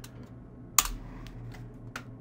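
Computer mouse clicks: a sharp click about a second in and another near the end, with a few fainter ticks, over a faint steady hum.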